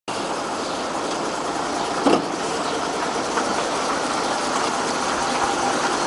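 Fire truck driving up and turning close by on a wet road: its engine running under a steady hiss of tyres on wet asphalt, with a brief knock about two seconds in.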